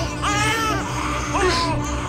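A newborn baby crying in short, high cries that rise and fall, over a steady low background music score.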